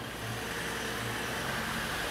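Refuse truck's engine running steadily, slowly getting a little louder.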